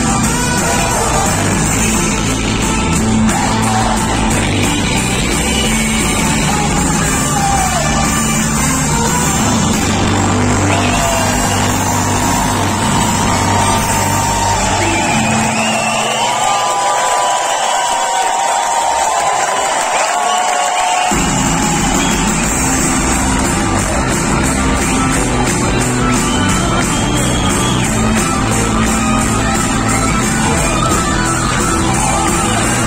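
Loud live band music with singing, recorded from among the audience, with the crowd cheering along. The bass drops out for about five seconds around the middle, then comes back in.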